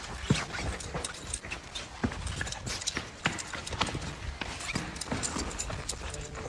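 A small dog's claws clicking quickly and unevenly on a hard tiled floor as it runs.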